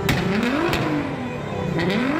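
Nissan GT-R (R35) twin-turbo V6 being blipped on the throttle, its pitch rising and falling about twice. Sharp exhaust bangs come as it shoots flames from the tailpipes: one right at the start, another under a second in, and a pair near the end.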